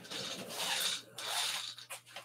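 Rubbing and rustling from a person swivelling round in an office chair, in two swells of about a second each.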